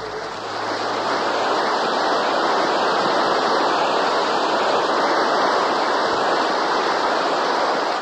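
Loud, steady rushing noise like surf that takes over as the sustained music notes fade out, swelling in the first second and cutting off abruptly at the end.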